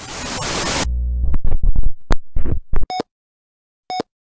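Television static hissing for under a second, then a run of deep thumps and crackles, then short electronic beeps about once a second, two of them, timing a film-leader countdown.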